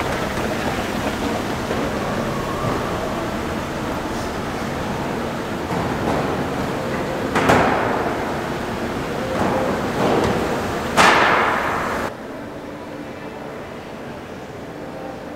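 Steady background hubbub and hiss of a large shopping-centre interior, broken twice by a sudden whooshing knock, about three and a half seconds apart. Shortly after the second one the sound drops abruptly to a quieter hush.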